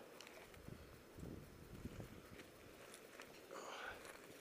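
Near silence: faint outdoor background with a few small scuffs and ticks, and no engine running.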